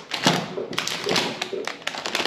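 Sterilization pouches rustling and crinkling as a packaged steel dental extraction forceps is handled and picked up, with light taps.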